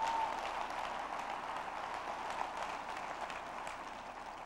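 Audience applauding, the clapping steady and then tapering off near the end.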